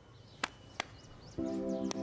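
Cartoon soundtrack: two sharp clicks, then a short run of high twinkling chirps, then a held musical chord coming in about one and a half seconds in.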